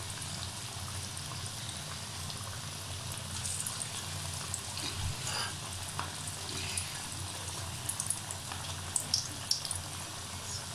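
Potato tikkis frying in hot oil in a kadhai: a steady sizzle with scattered small pops and crackles, more of them near the end.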